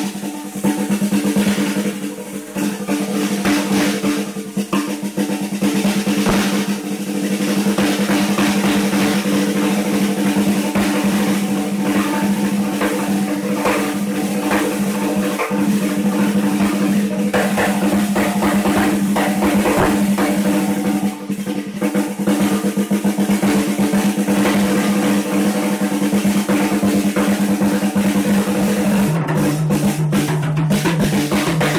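Acoustic drum kit played solo: a continuous, fast run of stick strokes, mostly on the snare drum, with bass drum underneath. Near the end the playing moves to a lower-pitched drum.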